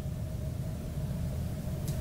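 Room tone: a steady low hum of background noise with no distinct events.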